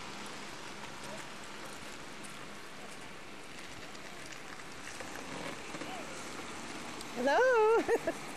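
Steady outdoor background hiss, then near the end a loud, high, warbling vocal call that swoops up and down a few times in under a second.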